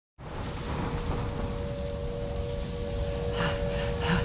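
Steady rushing noise like heavy rain, fading in at the start and slowly swelling, with a faint steady tone held underneath. Irregular crackling rattles join in near the end.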